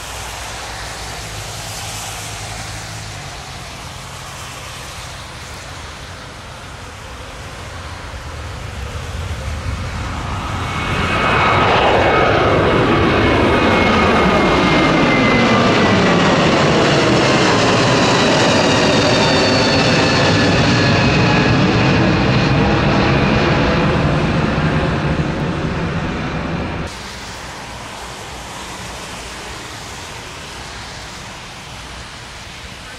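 Airbus A321neo jet engines at takeoff power: a steady distant rumble during the takeoff roll, then much louder as the climbing jet passes overhead, its whining tones falling in pitch as it goes by. The sound cuts off suddenly near the end to a quieter steady noise.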